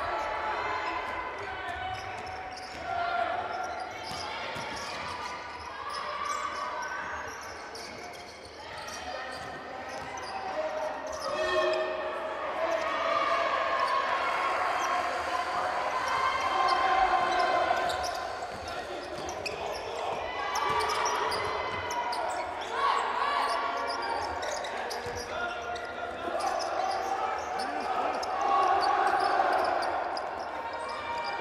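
A basketball being dribbled on a hardwood court in a large sports hall, the bounces echoing under voices.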